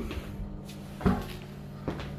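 Interior door being pushed open, with a knock about a second in and a lighter click near the end, over a steady low hum.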